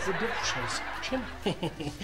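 A man snickering and chuckling over a wash of sitcom laugh track that fades away over the first second and a half.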